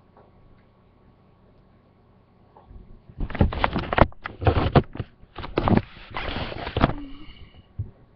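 Loud rustling and bumping right against the microphone: close handling noise in uneven bursts, starting about three seconds in and stopping about a second before the end.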